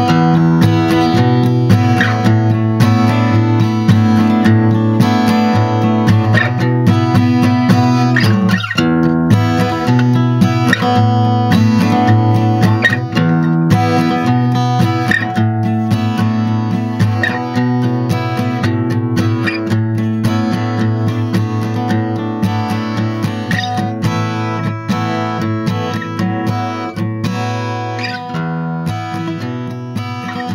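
Background music led by acoustic guitar, steady throughout and growing gradually quieter over the last few seconds.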